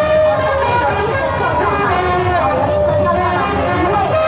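Brass marching band playing a tune, with trumpets and trombones carrying the melody over a bass drum.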